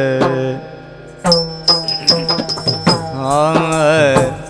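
Yakshagana music: a singer holding long sung vowels over a steady drone, with maddale drum strokes and ringing strikes of small hand cymbals. The music drops to a lull about half a second in and comes back strongly just over a second in.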